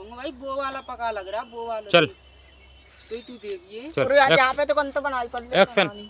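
Young male voices talking in short bursts, over a steady high-pitched insect drone.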